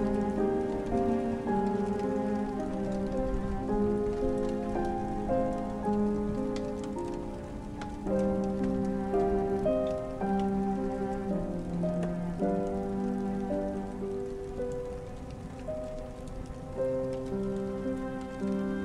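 Steady rain with slow, calm instrumental music of held notes over it.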